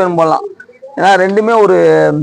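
A man's voice speaking, with long drawn-out syllables, and a dove's soft low coo in the short pause about half a second in.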